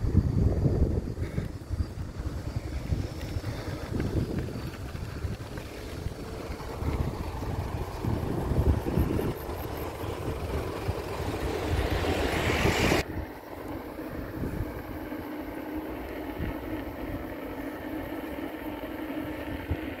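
Wind noise on the microphone over the running noise of a moving vehicle. The wind is heavy and gusty at first; about 13 s in it drops away, leaving a quieter steady hum.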